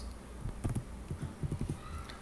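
Computer keyboard keystrokes: a quick, irregular run of about a dozen soft, low knocks over a second and a half as a word is typed into a spreadsheet cell.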